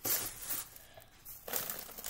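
Plastic crinkling and rustling in two bursts, one at the start and another about a second and a half in.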